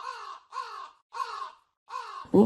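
A crow cawing four times in a row, evenly spaced about every 0.6 seconds, each caw falling in pitch.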